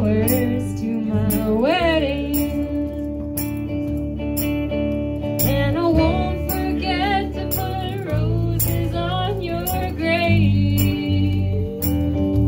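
A woman sings live into a microphone while strumming an amplified hollow-body electric guitar, with a steady strum and low bass notes under the vocal line. Her voice slides up about two seconds in.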